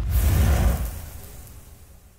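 A video-editing transition sound effect: a deep whoosh with a heavy low rumble that hits at once and fades steadily away over about two seconds.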